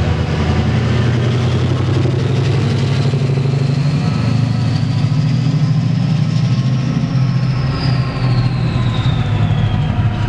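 Two Class 68 diesel-electric locomotives moving off along the platform, their Caterpillar V16 diesel engines running with a deep, steady throb. A thin high whine rises slowly, then falls away over the last few seconds.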